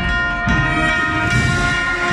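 Agrupación musical (cornets, trumpets, low brass and drums) playing a Holy Week procession march: a long held brass chord over beating drums.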